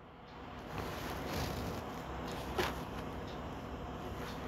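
Steel ladle stirring cooked quinoa and moong dal pongal in a cast-iron kadai: a low, steady rustle with one brief tap about two and a half seconds in.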